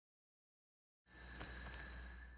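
A bell-like chime that strikes suddenly about a second in, out of silence, and rings on with several steady high tones over a low hum.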